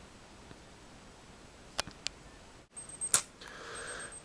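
Quiet room tone with a few sharp, faint clicks of handling around the middle, broken by a brief moment of dead silence where the recording cuts.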